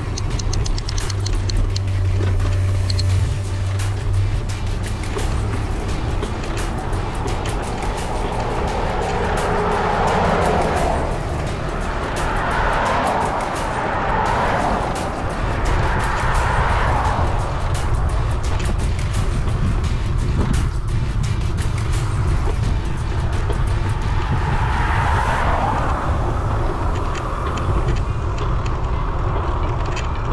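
Wind buffeting the microphone of a camera on a moving bicycle, mixed with background music, while traffic goes by on the highway now and then.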